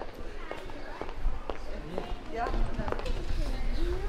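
Footsteps on a cobblestone street, a short click about every half second, over a low steady rumble, with faint voices of people nearby in the second half.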